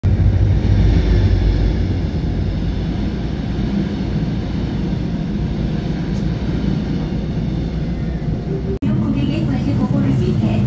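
Suin-Bundang Line subway cars being hauled past on a delivery transfer run, their wheels rumbling steadily on the rails, heaviest in the first couple of seconds. The sound cuts off abruptly near the end.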